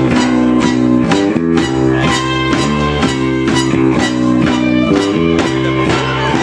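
Live band playing guitar music: strummed guitar chords with a steady, quick beat.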